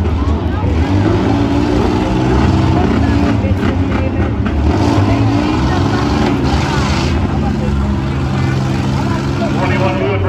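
Several minivan engines running and revving together, their pitches rising and falling under a steady low rumble, as the vans push and ram one another in a demolition derby.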